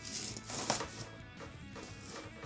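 Bayonet blade slicing through packing tape along a cardboard box seam, in a few short scraping cuts, with quiet background music.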